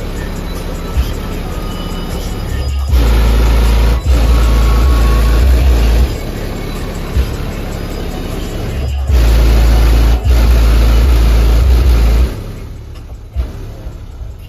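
Car stereo system playing music with heavy sub-bass that pounds hard in two surges of about three seconds each, a few seconds in and again from about nine seconds, then drops away near the end.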